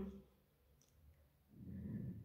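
Near silence broken by a couple of faint clicks about a second in, then a low rumbling noise that builds over the last half second.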